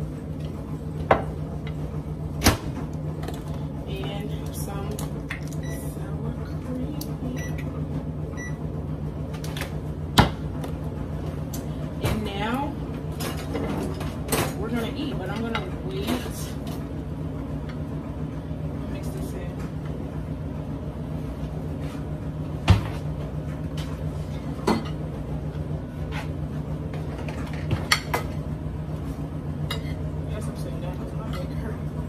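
A steady low hum from a running kitchen appliance. Over it come about half a dozen sharp clicks and knocks of a glass jar, a spoon and a plate being handled on a kitchen countertop.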